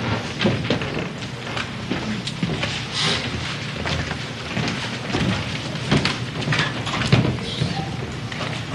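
Irregular knocks and thuds of actors moving about a stage, heard over a steady hiss.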